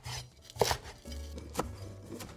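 Chef's knife chopping fresh parsley on a bamboo cutting board: three sharp knocks of the blade against the board, the loudest a little past half a second in.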